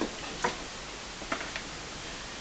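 Four light, irregular knocks or taps, the loudest about half a second in and two close together past the middle, over faint room hiss.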